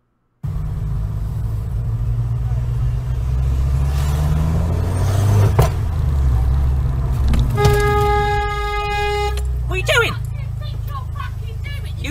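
Steady road and engine rumble heard from inside a moving car, then a car horn sounding once, held for nearly two seconds, at a car pulling out in front without giving way.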